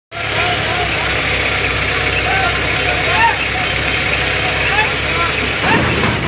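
Diesel engine of an Indo Power crane running steadily under load while it lifts an overturned coal tipper trailer back onto its wheels, with short calls from voices over it.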